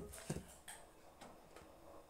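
Quiet room with a few faint, irregularly spaced clicks.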